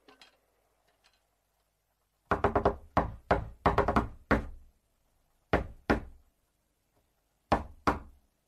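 Knocking on a wooden door: a quick flurry of about ten knocks, then a double knock, then another double knock, in the manner of a coded signal.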